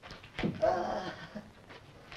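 A man's drawn-out, bleat-like vocal sound lasting about a second. It begins with a sharp catch about half a second in and holds a slightly wavering pitch before fading.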